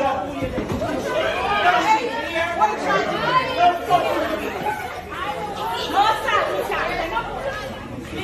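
Several people's voices talking over one another in continuous overlapping chatter: customers quarrelling at a fast-food counter.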